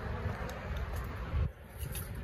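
Steady outdoor background noise with no clear pitched source, and one soft low thump about one and a half seconds in.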